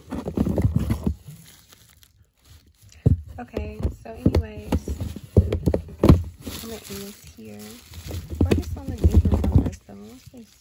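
Spice jars knocking and clattering against each other, with bubble wrap crinkling, as a hand digs through a box of them in several bursts. A voice murmurs briefly in between.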